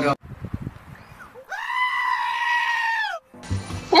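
A goat bleat, most likely a sound effect edited in: one long, steady call lasting nearly two seconds that starts about a second and a half in and cuts off sharply.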